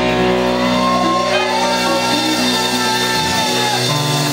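Live rock band letting a chord ring out at the end of a song: electric guitars sustain with bent, sliding notes over a held low bass note. The bass note cuts out about three seconds in.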